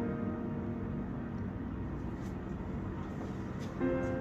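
A sustained musical tone with several overtones, slowly fading away. A second, similar tone starts near the end.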